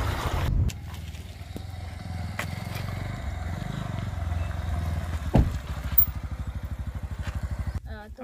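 Bajaj Pulsar motorcycle's single-cylinder engine running at low speed as the bike rolls in. After a single sharp knock about five seconds in, it idles with a quick, even putter, and the engine stops just before the end.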